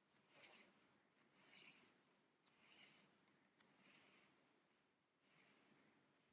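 Wool yarn being drawn through knitted stitches for a sewn rib bind-off, a soft rasping hiss with each pull, five pulls about a second apart.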